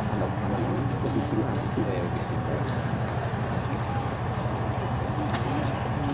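Room tone in a conference hall: a steady low hum with faint, indistinct voices murmuring in the background.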